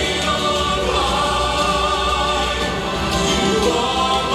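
A choir singing long held notes over instrumental music, part of a song in a stage musical.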